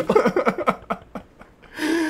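Two men laughing, dying down about a second in and picking up again near the end.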